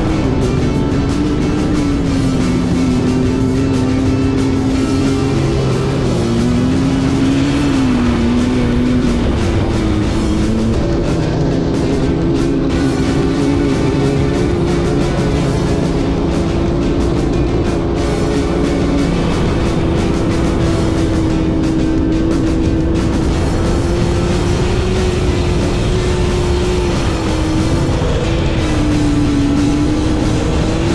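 Sandrail engine running under way on the dunes, its pitch rising and falling as the revs change, mixed with background music.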